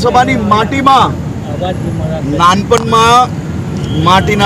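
A man speaking in two short stretches, in about the first second and again near the three-second mark, over a steady low rumble of background noise.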